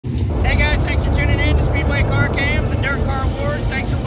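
A man talking over a steady low rumble of race car engines running at the track.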